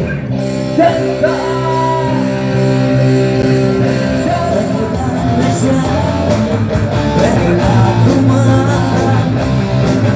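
Live rock band playing loud and steady: electric guitars and drums with cymbals, and a singer's voice over the music.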